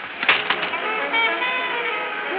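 Radio-drama sound effect of a hotel window sash being pushed open, a few quick knocks and rattles. Then brass band music from a street parade comes in through the open window and grows louder.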